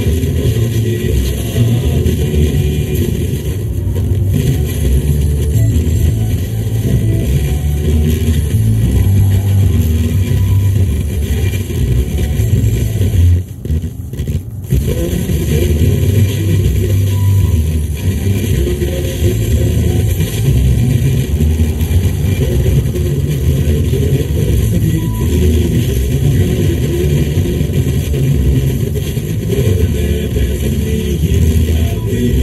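Road and engine noise heard inside a car's cabin at motorway speed: a steady low rumble, briefly dropping away about halfway through.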